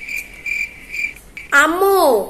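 Cricket chirping in an even rhythm of about four high chirps a second, stopping a little past a second in. Near the end a loud drawn-out voice follows, its pitch rising and then falling.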